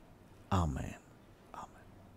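A man's brief, soft spoken word about half a second in, falling in pitch, then a faint murmur; otherwise a quiet pause in the prayer.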